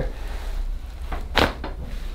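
Neck joints cracking during a chiropractic cervical adjustment at the top of the neck: one sharp crack about a second and a half in, with fainter pops just before and after it.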